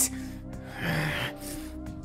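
Background music holding steady chords, with a person's breathy gasp about a second in.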